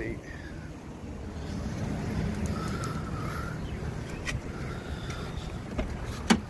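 Wind rumbling on a phone microphone, with a few light handling clicks.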